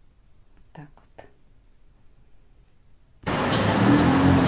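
Near silence with two faint, short vocal sounds about a second in; then, just past three seconds, a sudden loud wash of busy street noise with voices starts abruptly.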